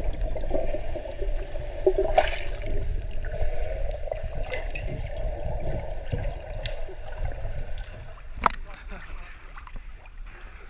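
Muffled underwater pool sound picked up through a submerged camera: a steady low rumble of moving water with scattered sharp clicks, one louder click near the end.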